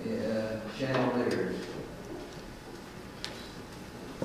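A man speaking for about a second and a half, then quiet room tone with a single faint click about three seconds in.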